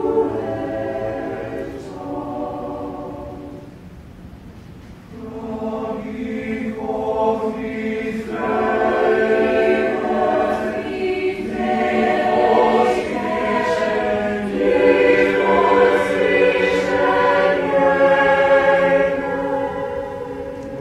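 Mixed chamber choir singing a cappella in sustained chords; the sound thins to a soft held tone about three to five seconds in, then the voices re-enter and swell to a fuller sound.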